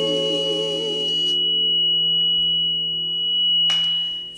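Gospel praise team holding a final sung note with vibrato over a sustained keyboard chord; the voices stop about a second in while the chord rings on. A steady high pure tone sounds throughout, and a short hiss comes near the end.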